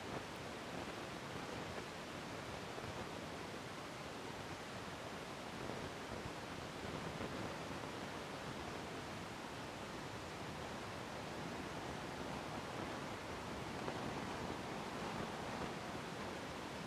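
Steady hiss of rain falling on a wet street. Near the end a vehicle's tyres on the wet road approach and swell the noise a little.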